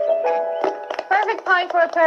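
Light instrumental background music of held notes, with a woman's voice starting to speak over it about a second in.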